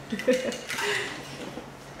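A woman's brief vocal sound, then a drink being stirred with a stirrer in a metal pineapple-shaped cup.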